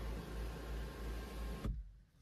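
Electric sunshade of a panoramic glass roof sliding open, its motor running with a steady low hum, then cutting off abruptly with a click shortly before the end.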